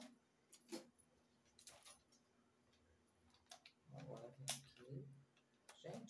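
Near silence broken by a few faint, short snips of scissors cutting open a stiff, sealed foil face-mask sachet, with a brief low murmur of voice about four seconds in.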